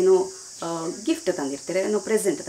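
A woman speaking, with a steady high-pitched hiss running behind her voice.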